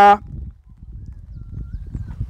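A man's short, held 'uh' at the very start, then a low, uneven rumble of wind and handling noise on the microphone.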